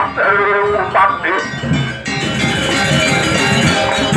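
A high, wavering voice calls out in the first second or so, then a Balinese gamelan ensemble plays loudly from about two seconds in, its bronze metallophones and gongs ringing together.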